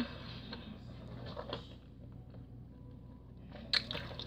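Faint chewing of a mouthful of Skittles candy, with a few soft clicks. The sharpest clicks come near the end.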